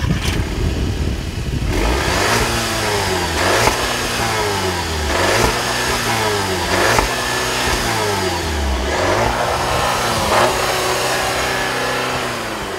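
VW Beetle R-Line's 2.0-litre turbocharged direct-injection four-cylinder, heard at the tailpipe, revved again and again while standing still, the pitch rising and falling about every second and a half to two seconds. The revs top out around 3,500 RPM, where the stationary rev limit holds the engine back.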